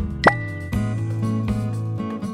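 Strummed acoustic-guitar background music, with a quick rising pop sound effect about a quarter second in that leaves a thin high ringing tone for about a second.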